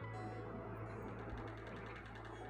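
Steady low hum under faint room tone, with no distinct event standing out.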